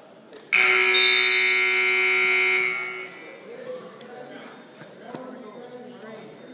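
Gym scoreboard buzzer sounding one steady, loud blare of a little over two seconds, starting about half a second in, marking the end of the wrestling match on a pin.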